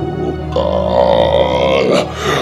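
Film background music, with a loud, drawn-out vocal sound over it lasting about a second and a half, starting about half a second in.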